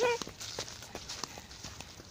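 A toddler's brief high vocal sound right at the start, followed by her light, uneven footsteps in sandals on a dirt path, heard as scattered soft ticks.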